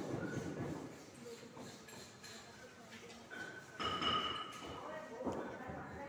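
Hand rubbing a damp granule mass through a brass sieve's wire mesh, a soft scraping and rustling as the wet powder is forced through. Indistinct voices are heard in the background, loudest about four seconds in.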